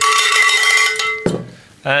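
A cowbell on the desk struck once and ringing for just over a second before it stops abruptly, rung to mark a 'super nice' verdict.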